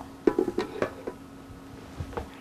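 A few light plastic knocks and clicks in the first second as a pupilometer is handled and shifted on a wooden tabletop, followed by a faint steady hum.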